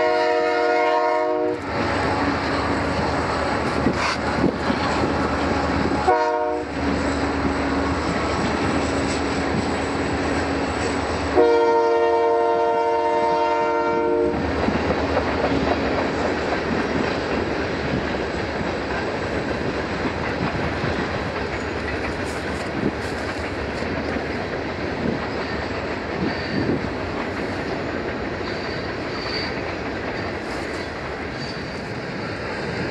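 Freight train cars rolling past with a steady rumble and clatter of wheels over rail joints. The lead locomotive's horn sounds ahead of the train three times: briefly at the start, a short blast about six seconds in, and a longer blast around twelve seconds in.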